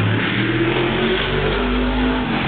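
The V8 engine of a 410 super modified race car running at speed, with a fairly steady note.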